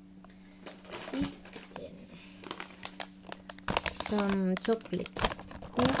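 Plastic food packaging crinkling and crackling as it is handled, in short irregular rustles that grow busier and louder about four seconds in.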